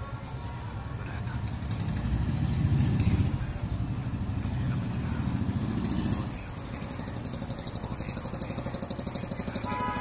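A motor vehicle's engine rumbling, swelling louder from about two seconds in, then settling into a quicker steady pulsing for the rest.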